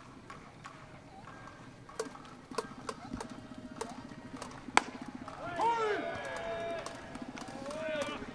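A few light knocks, then one loud, sharp smack of a pitched baseball just before the middle, followed by loud shouted calls from the field that rise and fall in pitch.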